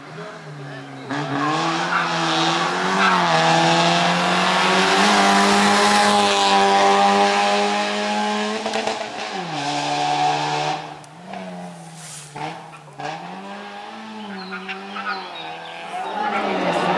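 Small hatchback race car's engine revving hard through a cone slalom, its pitch repeatedly climbing and dipping as the driver accelerates and lifts between the cones. Loudest in the first ten seconds, then fainter, still rising and falling, as the car pulls away.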